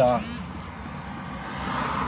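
Highway traffic: the noise of a passing car's tyres and engine, growing louder toward the end.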